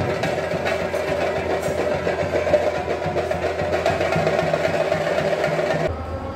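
Drums beating rapidly in a dense, continuous rhythm over a crowd din, as in Kerala temple-festival percussion. The sound cuts off suddenly just before the end.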